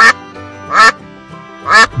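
A wild mallard hen quacking as she flies off: three loud quacks about a second apart.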